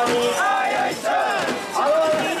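Crowd of mikoshi bearers shouting together as they heave the portable shrine, many men's voices overlapping in a loud carrying chant.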